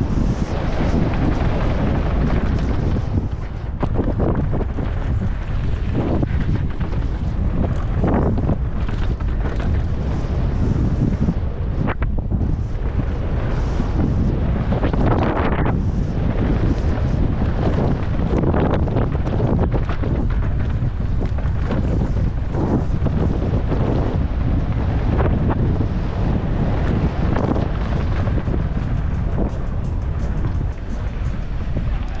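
Wind buffeting the camera's microphone on a fast downhill mountain-bike run, with the tyres rolling over a dirt track and the bike clattering over bumps in many short knocks.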